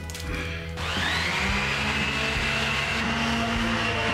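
A corded handheld electric power tool switches on about a second in. Its motor whines up in pitch, then runs steadily while pressed onto wet concrete in a bench form. Background music plays underneath.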